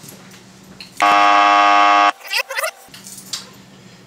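A loud, steady electronic buzz that starts abruptly about a second in and cuts off sharply just over a second later.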